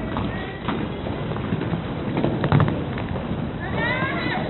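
Roller skate wheels rolling and clattering on a wooden rink floor, with scattered sharp clacks, the loudest about two and a half seconds in.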